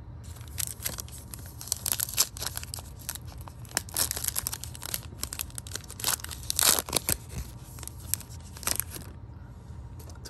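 A 2023 Panini Prizm football card pack's foil wrapper being torn open and crinkled by hand: a long run of sharp crackles and rips, loudest about two, four and seven seconds in.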